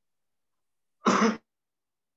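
A single short cough from a meeting participant, about a second in, heard over a video-call audio feed.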